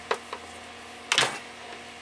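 Two light clicks, then a sharper, louder clatter about a second in, from the fan's power cord and plug being handled before it is plugged in, over a steady low hum in the room.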